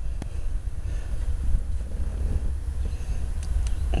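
Wind buffeting the camcorder microphone: a steady low rumble, with a couple of faint clicks.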